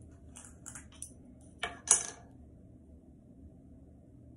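Makeup items being handled on a hard surface: a few light taps and scrapes, then two sharp clicks about a quarter-second apart, roughly a second and a half in.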